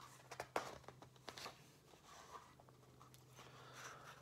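Pages of a paper picture book being turned by hand: a few quick paper rustles and flaps, mostly in the first second and a half.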